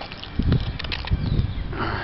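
Wind and handling noise on a handheld camera's microphone: irregular low rumbling with a few knocks about half a second in.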